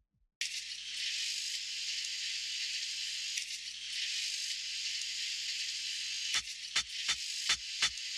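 Opening of a lofi music track: a steady crackling hiss with a faint low hum starts about half a second in. About six seconds in, a regular beat of sharp clicks begins, almost three a second.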